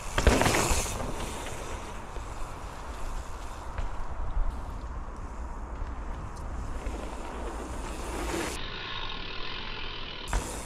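Mountain bike tyres rolling over dirt trail and jumps, with a louder burst of tyre noise just after the start, under a steady rumble of wind on an action-camera microphone.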